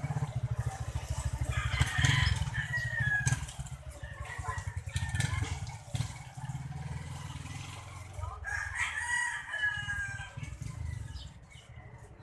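A rooster crowing twice, about two seconds in and again about eight seconds in, each crow a long call that falls in pitch at the end, over a low steady rumble.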